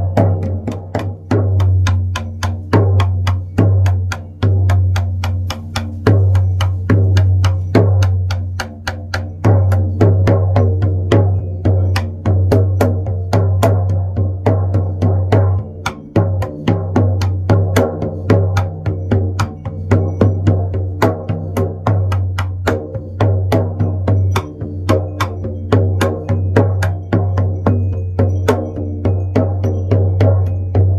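16-inch Remo Buffalo frame drum with a synthetic head, struck with a padded beater in a steady, even beat. Each stroke leaves a deep, ringing tone that carries on under the beats.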